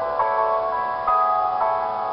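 Piano backing track playing an instrumental passage with no vocal: sustained chords, a new chord struck a few times in turn.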